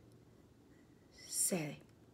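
Quiet room tone, then about one and a half seconds in a woman's short breathy vocal sound, like a sigh, falling in pitch.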